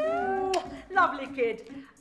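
A woman's drawn-out humming 'mmm' as she kisses a child's cheek, ending in a sharp lip smack about half a second in. A brief voiced sound follows about a second in.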